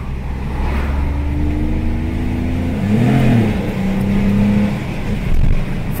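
A Ford Ka 1.0 three-cylinder engine running, heard from inside the cabin as the car drives at low speed. The engine note shifts in pitch about halfway through.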